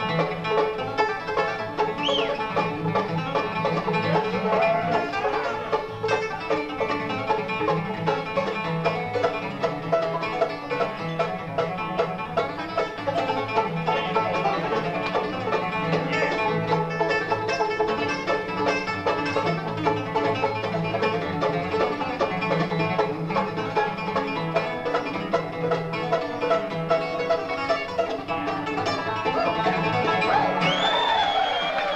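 Live acoustic bluegrass band playing an instrumental break with no singing: banjo, acoustic guitar, mandolin, fiddle and upright bass over a steady, even beat.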